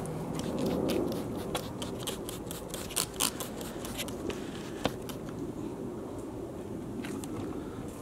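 Stainless steel cleaner being sprayed onto a stainless steel toolbox top and wiped: a string of short hissing and rubbing sounds, most of them in the first five seconds.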